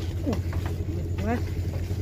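A steady low engine hum runs under short excited shouts, with a few faint knocks.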